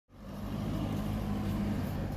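Street traffic with a steady low engine hum, fading in at the start.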